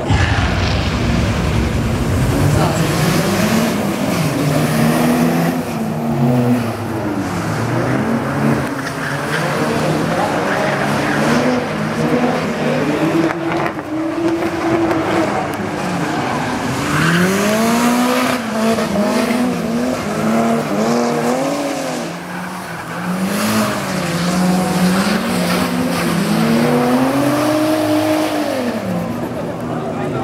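Drift cars' engines revving up and down over and over as they slide through a coned course, with tyres squealing.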